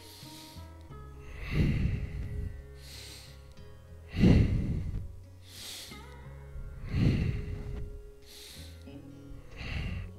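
A man breathing hard under exertion while holding back-extension lifts: heavy exhales about every two and a half to three seconds with airy inhales between, over soft background music.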